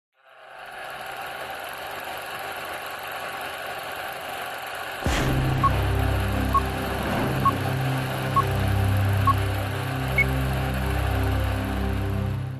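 Old-film countdown leader sound effect: a steady noisy whir of a running film projector, then from about five seconds in a low drone joins it with a short beep about once a second as each number counts down, the last beep higher in pitch.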